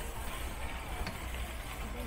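Steady low rumble of outdoor background noise, with a single faint click about a second in.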